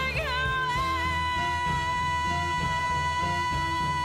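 A woman's voice sings a high, long-held note, sliding into it in the first second and then holding it steady, over a band of piano, strings and upright bass.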